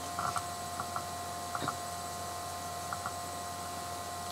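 Steady electrical hum, with a few faint light clicks of a plastic eyeshadow compact being handled, mostly in the first second.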